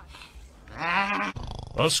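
A cartoon character's voice: one drawn-out vocal sound lasting under a second, then a short, loud vocal burst near the end.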